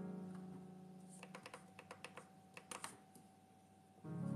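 A sustained electric keyboard chord that fades slowly, with a quick run of light clicks in the middle, like typing on a keyboard.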